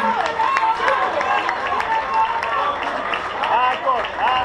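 A small club crowd cheering and shouting, several voices at once, with scattered clapping.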